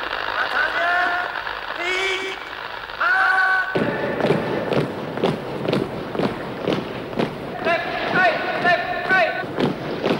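A gramophone record playing the sound of an army, as a cartoon sound effect. Shouted calls come first; from about four seconds in there is a steady march of thuds, about three a second, with more calls near the end.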